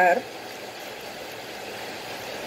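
A spoken word ends at the very start, then steady, even background noise with no distinct events.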